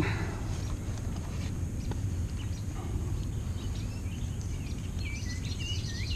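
Steady low outdoor background rumble, with a few faint bird chirps about five seconds in.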